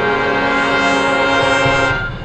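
Marching band brass playing one loud held chord, cut off together near the end.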